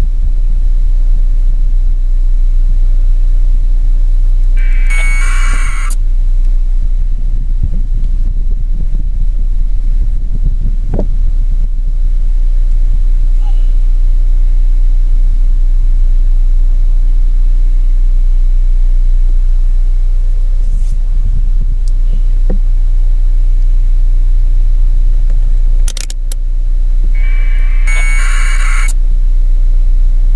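Wind buffeting an outdoor microphone: a loud, steady low rumble. Twice, about five seconds in and again near the end, there is a short burst of electronic tones lasting about a second.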